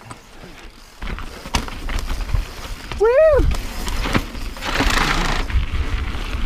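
Mountain bike rolling down a rough dirt and rock trail, heard on the rider's action camera: a steady rumble of wind and tyre noise with scattered knocks from the wheels hitting rocks, and a short rising-and-falling shout from the rider about three seconds in.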